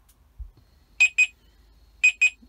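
Truck's electronic warning chime just after the ignition key is turned back on: two pairs of short, high-pitched beeps about a second apart.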